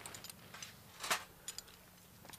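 Faint clicks and one clearer knock about a second in, from a cat capture cage being handled and set in place.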